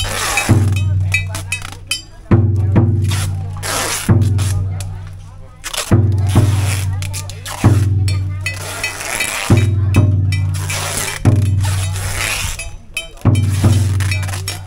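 Funeral percussion: a deep drum struck every second or two, each beat ringing on and fading, with metallic clashes of cymbals over it.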